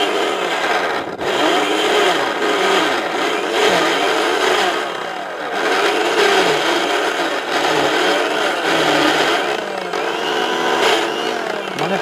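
Electric mixer grinder running continuously with a small stainless steel jar, chopping solid chunks down toward a paste; the motor's pitch wavers as it works.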